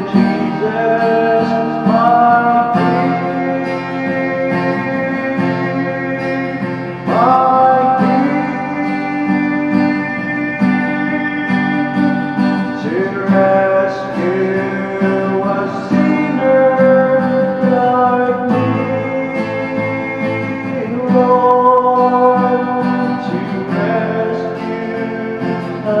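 A man singing a slow gospel song to his own strummed acoustic guitar, holding long notes between phrases.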